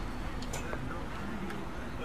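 Faint distant voices of players over a steady low outdoor rumble, with a couple of faint ticks.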